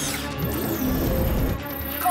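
Sci-fi cartoon sound effects over a background music score: a low rumble with wavering electronic tones and a high falling glide about half a second in.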